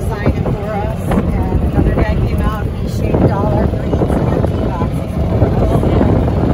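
A moving golf cart, heard from on board: a steady low rumble of the cart rolling, with wind buffeting the microphone.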